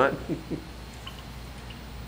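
A man's short laugh trailing off in the first half second, then a steady low hum with a couple of faint light ticks.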